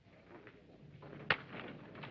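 Faint murmur of men's voices, rising after a quiet start, with a single sharp click a little past a second in.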